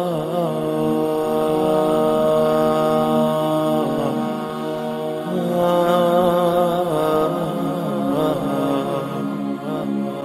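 Background music of wordless sung vocals: long held 'ah' notes moving slowly from pitch to pitch, chant-like.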